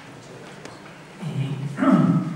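Quiet hall room tone, then about a second in a man's voice starts a drawn-out vocal sound that swells louder.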